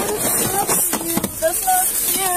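Indistinct voice sounds: short, high, wavering vocal noises rather than clear words.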